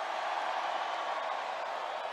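Large crowd cheering and shouting in response to a call from the stage, a steady roar that slowly fades toward the end.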